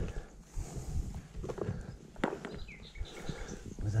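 Footsteps in grass and scattered knocks and rustles of handling close to a chest-mounted camera, with a faint short high call about three seconds in.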